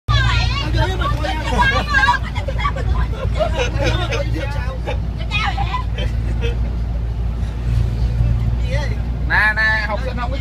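Steady low engine and road rumble inside the cabin of a moving van, with people chatting over it in several stretches.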